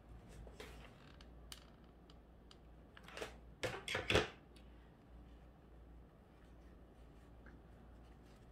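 Ribbon loops of a hair bow being pressed and adjusted by hand, with faint scattered rustles and a brief cluster of louder rustling handling sounds about three to four seconds in.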